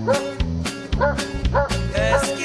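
Background music with a steady beat. Over it a Presa Canario barks several times in short, separate barks.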